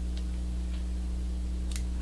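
Small fly-tying scissors snipping the foam head of a popper: two faint clicks, one just after the start and a clearer one near the end, over a steady electrical hum.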